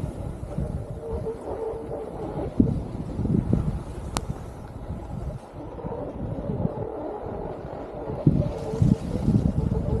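Wind buffeting the microphone while skiing downhill, mixed with the hiss and scrape of skis sliding on groomed snow, rising and falling in gusts. A single sharp click about four seconds in.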